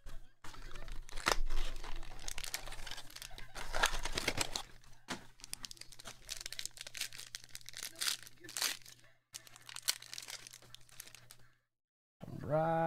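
A foil trading-card pack from a 2022 Topps Five Star box crinkling and rustling in the hands as it is handled and torn open, in irregular bursts with brief pauses.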